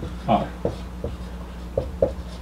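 Dry-erase marker writing on a whiteboard: a few short, separate strokes as letters are drawn.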